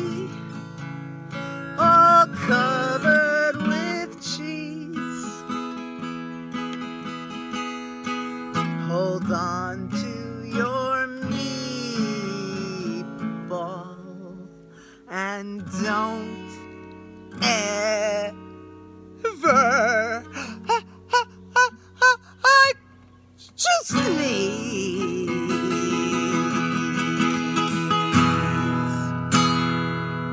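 A woman singing a children's song, accompanied by her own strummed acoustic guitar. About halfway through it goes quieter for a moment, then comes a run of short, separate sung syllables before the strumming and singing pick up again.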